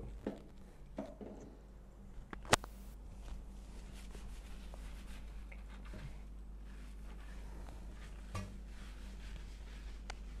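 Faint handling sounds at a bathroom sink while hair is being washed: one sharp click a couple of seconds in and a softer knock near the end, over a low steady hum.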